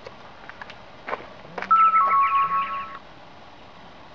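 A short two-note electronic chime, a higher note stepping down to a lower one, starting about a second and a half in and lasting about a second and a half.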